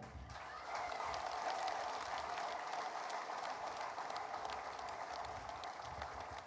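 Audience applauding: many hands clapping in an even patter that starts just after the speech breaks off and slowly eases.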